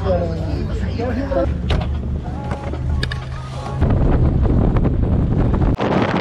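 Voices for about a second and a half, then a steady low vehicle hum. From about four seconds in, louder wind buffets a camera held outside the window of a moving car.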